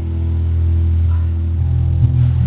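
Live rock band playing in a small room: a low electric guitar and bass chord is held and rings, and new notes are struck near the end.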